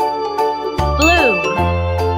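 Children's background music on keyboard with a steady bass line. About a second in, a sound effect glides quickly up and down in pitch and leaves a ringing ding.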